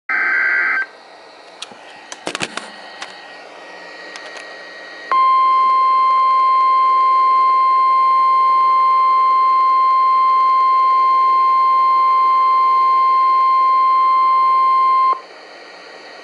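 NOAA Weather Radio emergency alert played through a computer speaker: the tail of the EAS/SAME digital header's warbling data burst, a few clicks, then the steady 1050 Hz warning alarm tone held for about ten seconds before cutting off sharply. The tone signals that an urgent weather warning message is about to be read.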